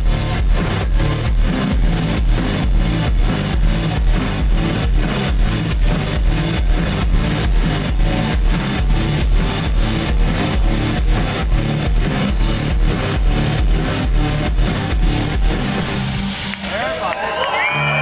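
Live rock band playing loud, with drums keeping a fast steady beat under electric guitars, bass and keyboards. About sixteen seconds in the music stops and crowd voices and cheers follow.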